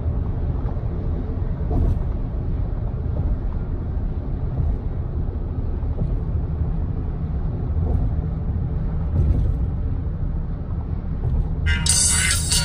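Car cabin noise at highway speed: a steady low rumble of tyres on the road and the engine, heard from inside the car. Music comes in just before the end.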